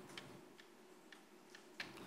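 Very faint, irregular taps and ticks of chalk on a blackboard while writing, with a slightly sharper tap near the end; otherwise near silence.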